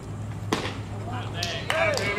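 A pitched baseball arriving at the plate: one sharp pop about half a second in, followed by voices near the end.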